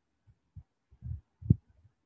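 A few soft low thumps and one sharp tap about one and a half seconds in: a stylus knocking on a writing tablet.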